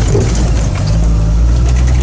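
Engine of an old utility truck heard from inside its cab while driving: a steady low drone that grows stronger from about halfway in.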